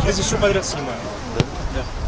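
A football kicked once: a single sharp thud about a second and a half in, amid players' shouts.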